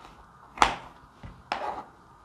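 Kitchen knife cutting red bell pepper strips on a cutting board: a few short knife strokes knocking on the board, the first, about half a second in, the loudest.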